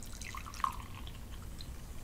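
Soda poured from a can into a glass: faint liquid dribbling and splashing, with a couple of small splashes in the first second.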